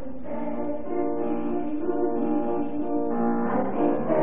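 A choir singing sustained chords with instrumental accompaniment. The sound is muffled, with little above the midrange, as from an old videotape recording.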